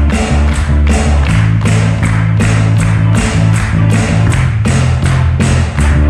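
Upbeat band music: an electric bass holding notes that change about once a second, under a steady drum-kit beat.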